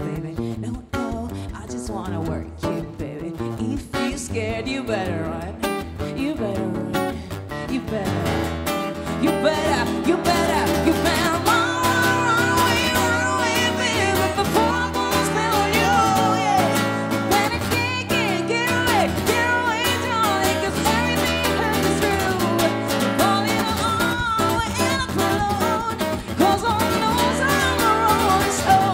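Live acoustic guitar strummed in steady chords, strung with Dogal RC148 phosphor bronze strings, under a woman's lead vocal with a man singing along. The singing grows fuller and louder about a third of the way in.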